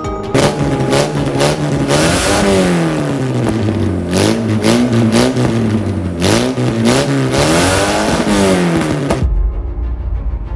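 Car engine revving through a quad exhaust. The pitch rises and falls several times, then cuts off suddenly near the end.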